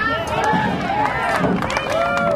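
A large crowd, mostly children, shouting and calling out at once, many voices overlapping, with a few sharp clicks among them.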